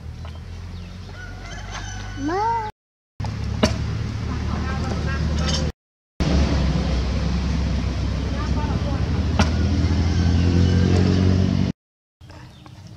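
A rooster crows once, a short call that rises and falls in pitch about two seconds in, over a steady low rumble. The sound cuts out briefly twice.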